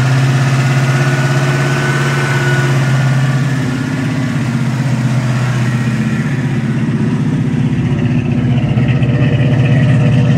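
Carbureted 302 (5.0 L) small-block Ford V8 running at a steady idle through long-tube headers and Flowmaster mufflers, shortly after its first start following a conversion from fuel injection. It grows a little louder near the end, at the tailpipes.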